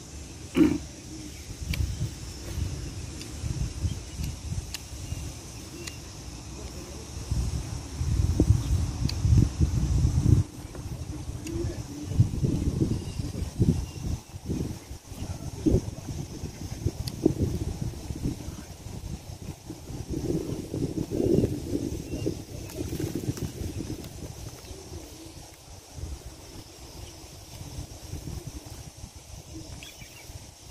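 A man chewing and biting into a grilled chicken leg close to the microphone: irregular low mouth and handling noises that come and go, densest about eight to ten seconds in.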